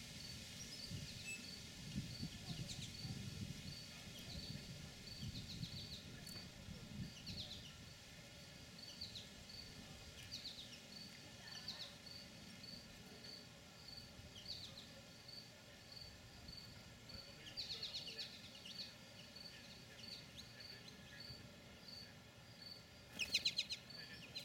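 Steady insect chirping: one short high note repeated about two times a second, evenly spaced. At intervals there are short bursts of rapid high chirps or clicks, the loudest just before the end.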